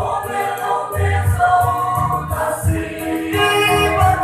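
Large mixed choir of young men and women singing a gospel hymn together.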